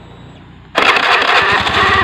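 Honda Beat FI scooter engine starting on the electric starter: quiet at first, it catches suddenly about three quarters of a second in and runs loud with a rapid, even firing pulse.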